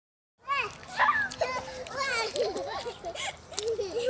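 Small children's high-pitched voices, babbling and squealing.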